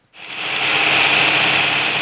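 Farm tractor running a snowblower, a steady rushing noise of engine and thrown snow that fades in over about half a second.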